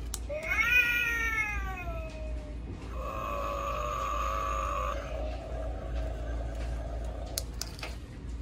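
Hyde & EEK animated black cat candy bowl playing a recorded cat yowl through its small speaker: one long call that rises and then falls in pitch, followed by a steadier held yowl lasting a few seconds. A couple of sharp clicks come near the end.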